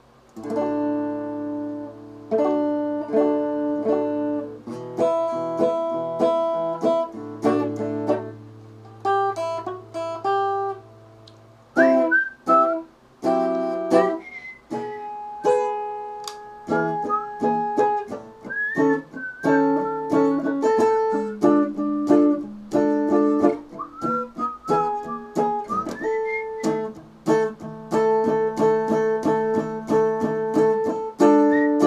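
Electric guitar strung with Gibson pure nickel 011-gauge strings, tuned half a step down, being played. Sustained chords ring for about the first twelve seconds, then single-note lead phrases with string bends follow.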